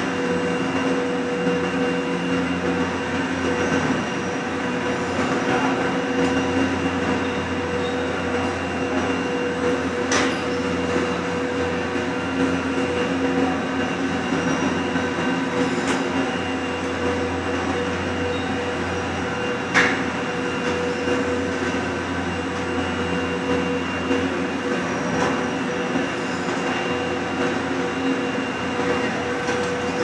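Doppelmayr 6/8-CGD/B detachable chair-and-gondola lift station machinery running as carriers roll through the terminal: a steady drone with a couple of held tones. A few sharp clacks sound several seconds apart.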